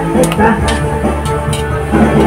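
Background music with sustained chords and a light, regular beat.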